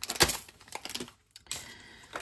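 Small zip-lock packets of plastic nail rhinestones being set down on a tabletop: a sharp tap shortly after the start, then a few lighter clicks.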